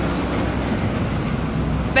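A motor vehicle passing close by: a steady rumble of engine and road noise, about as loud as the talking around it.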